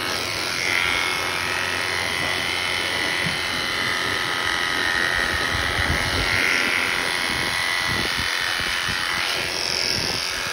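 Premier electric sheep-shearing clippers running without a break as they are pushed through a lamb's thick wool.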